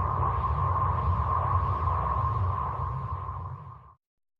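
Electronic performance score: a steady high ping-like tone over a low rumbling drone, with a shimmer above that swells and falls in quick regular waves. It fades and then cuts off abruptly just before the end.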